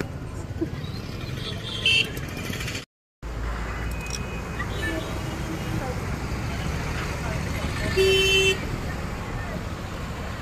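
Street traffic with a steady rumble of engines. A vehicle horn honks loudly for about half a second near the end, and there is a shorter toot about two seconds in.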